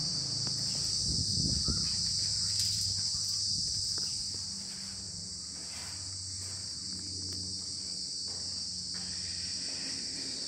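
A steady, high-pitched chorus of insects, with faint handling knocks and a low hum beneath it.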